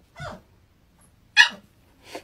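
Pit bull-type puppy giving a short, high-pitched bark about one and a half seconds in, with a softer short sound just before.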